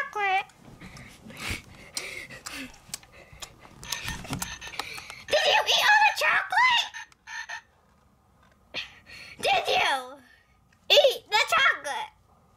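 A high-pitched, wordless puppet voice in three short bursts, about five, nine and eleven seconds in, with the bouncing pitch of croaking or babbling noises. Before it comes soft rustling of plush and blanket fabric.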